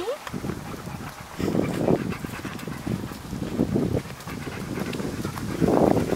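German shepherd panting as it walks, a run of quick breaths uneven in loudness.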